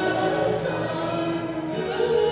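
A string orchestra and an Azerbaijani folk-instrument ensemble playing live, with singing over sustained string chords.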